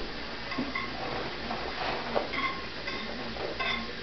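Dishes and cutlery clinking and knocking in a kitchen sink as they are washed by hand, with several short clinks, the sharpest about two seconds in.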